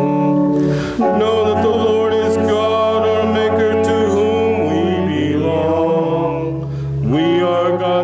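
A psalm being sung by a man's voice, accompanied on piano, in long held notes with short breaks between phrases.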